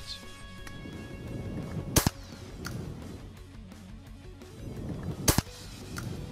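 Two 12-gauge pump-action shotgun shots, about three seconds apart, each a single sharp crack, over quiet background music.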